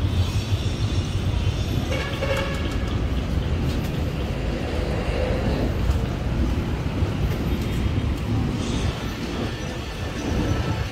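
Steady rumble of a vehicle in motion, with road traffic noise.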